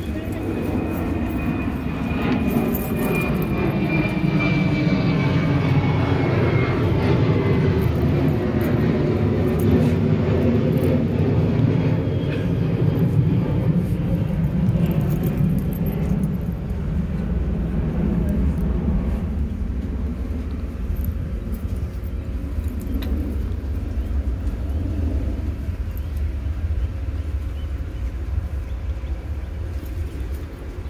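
An aircraft passing overhead: a low engine drone that swells over the first several seconds, is loudest a little before halfway, then slowly eases. A faint high whine slides down in pitch during the first few seconds.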